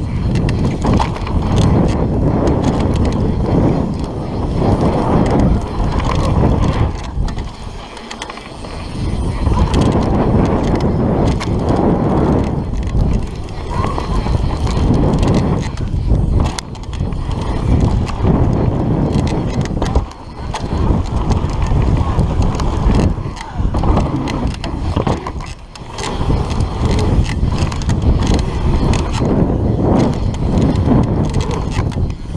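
Mountain bike riding fast down a dirt trail: knobby tyres rolling over packed dirt and the bike rattling over the bumps, heard as a loud rumbling noise that swells and eases, dropping off briefly a few times.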